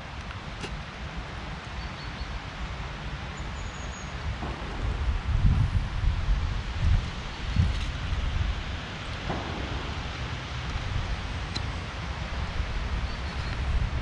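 Wind moving through trees: a steady rustle of leaves, with low gusts of wind on the microphone that are strongest in the middle. A few faint high chirps come through now and then.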